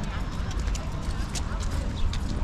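Busy seaside promenade ambience: scattered footsteps clacking on paving tiles and voices of passers-by over a low steady rumble.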